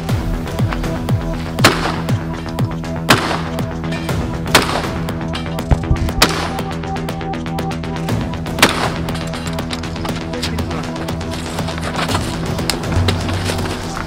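Single gunshots fired at range targets, about five of them one and a half to two and a half seconds apart, over a steady music bed.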